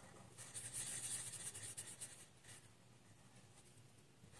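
Marker pen scribbling on paper, colouring in a small circle with quick back-and-forth strokes: a faint scratchy hiss for about two seconds, one more short stroke, then it stops.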